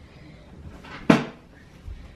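A single sharp clack of a hard object about a second in, with a weaker low thump near the end.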